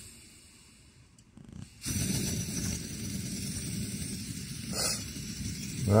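Coleman 533 dual-fuel pressurised stove burner, nearly silent at first, then coming up about two seconds in to a steady rushing hiss as it is turned up to full. The owner thinks the stove needs a service.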